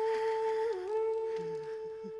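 Background music: one long sustained note that dips briefly in pitch a little under a second in, then holds steady again.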